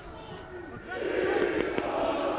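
Football stadium crowd noise, swelling louder about a second in and holding.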